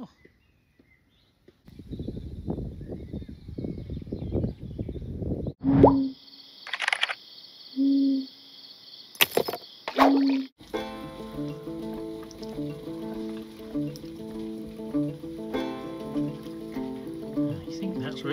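A few seconds of low, dense noise, then three short plop-like sounds with a laugh among them, followed from about ten seconds in by background music with held notes.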